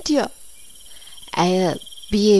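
Crickets chirping steadily in a night-time background, with a single short spoken syllable about one and a half seconds in.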